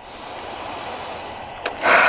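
A woman taking a long, deep sniff through her nose near the end, smelling sweet pea blossoms, over a steady faint hiss.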